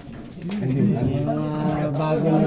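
Low, drawn-out men's voices in a crowded room, without clear words, starting about half a second in after a brief lull.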